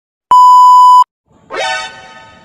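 A single loud, steady, high-pitched electronic beep lasting under a second. About a second and a half in, a short musical tone swells up in pitch and then fades away.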